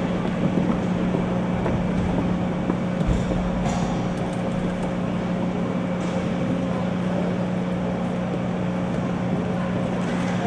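A steady low hum over an even background hiss, unchanging throughout: the room tone of a large hall, with no distinct events.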